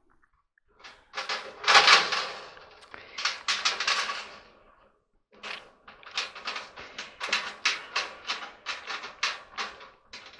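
The coiled wire of a clothes dryer's heating element scraping and rattling against the sheet-metal heater pan as it is worked into place: a dense burst of rattling about a second in, then a quick run of sharp clicks, about three a second, through the second half.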